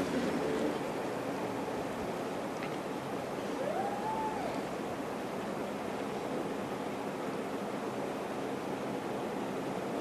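Steady, even hiss of room tone and recording noise. A faint short tone rises and falls about four seconds in.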